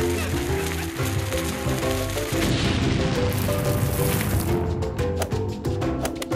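Background music with steady melodic notes, and about two seconds in a cartoon explosion sound effect: a rush of noise lasting a couple of seconds as a bundle of dynamite sticks blows up.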